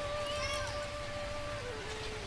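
A soft, sustained pitched note from an accompanying instrument, held steady and then stepping down through a few lower notes in the second half. About half a second in, a brief high cry rises and falls over it.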